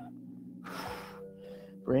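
A man's single heavy breath, under half a second long, about half a second in, from the exertion of slow bicycle crunches, over faint steady background music tones.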